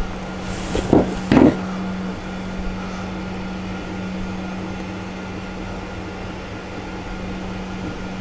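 Steady mechanical hum from a fan or machine in the room, with a couple of brief knocks of plastic parts being handled about a second in.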